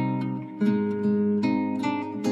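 Acoustic guitar strumming chords as the accompaniment to a slow ballad, with a new strum about half a second in and more following.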